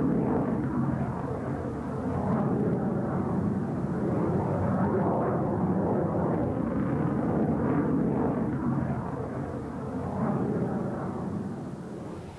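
Jet aircraft engine noise: a steady, rushing rumble that swells and eases several times and drops off near the end.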